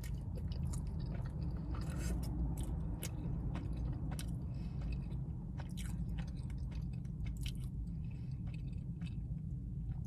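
A person chewing a mouthful of thick, fresh-cut noodles, with soft wet mouth clicks scattered throughout, over a steady low hum.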